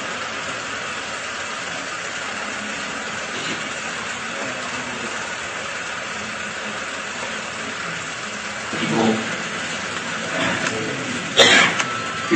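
Steady background hiss of a sermon recording during a pause in the talk, with a few short voice sounds in the last three seconds.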